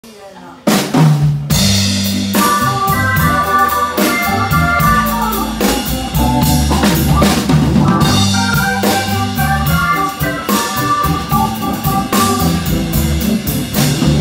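Live big band playing an instrumental intro, with drum kit hits under horn chords and saxophone. The band comes in abruptly, loud, under a second in.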